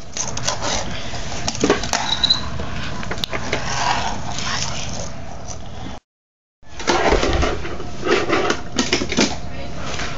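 Fingerboard clicking and clacking as it is ridden and flipped across a wooden floor and onto toy ramps: many small sharp knocks, denser in the last few seconds, with voices in the background. The sound drops out briefly a little past halfway.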